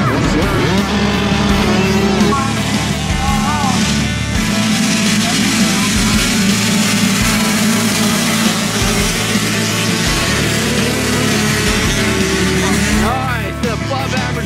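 A pack of 65cc two-stroke motocross bikes revving hard off a race start, engine pitch climbing and dropping as the riders shift, with music playing over it.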